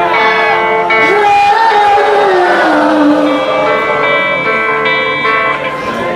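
A live rock band playing, led by electric guitar, with a few held notes sliding in pitch around the middle.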